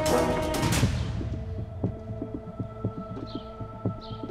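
Suspense film score: a loud percussive passage dies away in the first second, then a soft heartbeat-like throbbing pulse, about four beats a second, runs over a sustained drone.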